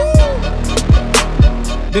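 Hip-hop beat between rapped lines. Deep bass drum hits drop steeply in pitch, three or so in two seconds, over a sustained bass note, with sharp crisp percussion hits on top.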